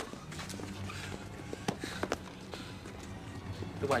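Footsteps and scuffling of several people on pavement, a handful of irregular short knocks, over a low steady hum.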